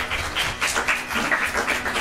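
A small audience applauding: a dense, uneven patter of hand claps.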